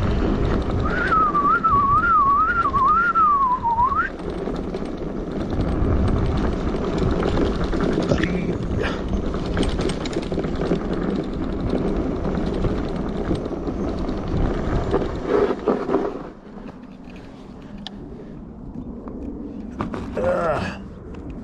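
Wind rush on the microphone and rumble from an electric fat-tire bike riding a dirt trail, with a short, wavering whistled tune over it in the first few seconds. The riding noise drops away about four seconds before the end as the bike comes to a stop.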